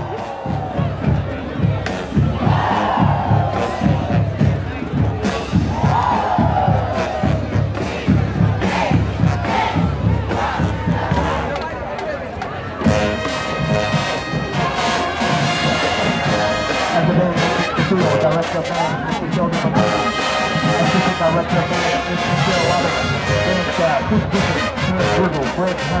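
High school marching band on the field: the drumline keeps a steady beat while the crowd shouts and cheers, then about halfway through the brass section, sousaphones among it, comes in loud over the drums.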